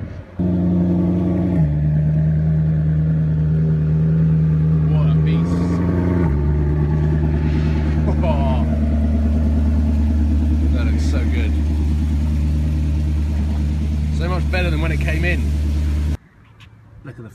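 Maserati GranTurismo's V8 idling loud and close, starting suddenly about half a second in. Its pitch steps down twice, at about a second and a half and again at about six seconds, then holds steady.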